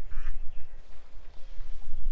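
A duck quacking once, briefly, near the start, over the steady low rumble of wind buffeting the microphone.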